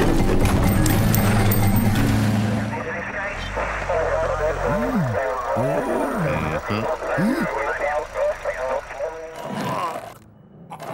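A cartoon car engine running loudly for the first two seconds or so, then men's mumbled voices with music.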